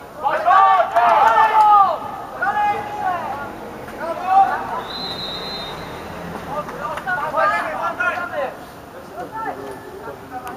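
Loud shouts from voices on a football pitch, coming in several bursts, with one steady referee's whistle blast lasting about a second, about five seconds in.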